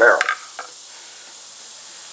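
A short click of shotgun parts being handled, then a steady faint hiss of room tone.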